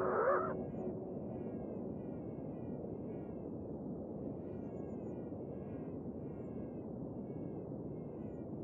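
Synthesized electronic sound: a steady, low, grainy noise bed with short falling chirps repeating about twice a second, after a few gliding tones fade out in the first half-second.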